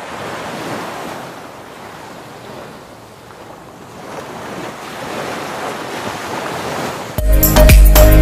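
Small waves washing onto a beach, an even rush that fades a little in the middle and swells again. Music with a beat cuts in near the end.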